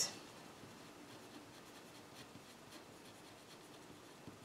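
Pen writing on paper: faint, irregular scratching strokes as words are written out by hand.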